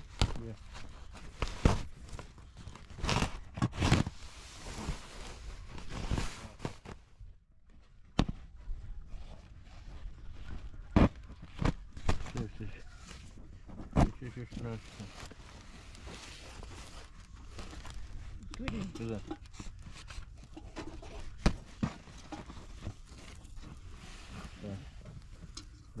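Woven plastic tarp rustling and crinkling as cord is pulled through it by hand, with sharp snaps and taps every few seconds.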